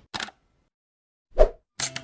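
Logo-animation sound effects: a short click, then a loud plop about one and a half seconds in, and a sharp click near the end.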